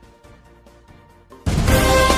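Faint background music bed, then loud theme music starts suddenly about one and a half seconds in: a TV channel's station ident jingle.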